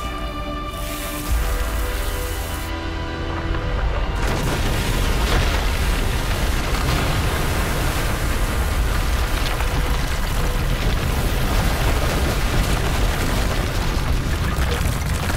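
Dramatic film score with held notes, giving way about four seconds in to a loud, continuous deep rumble with a noisy roar layered over it, like a cinematic boom or eruption effect.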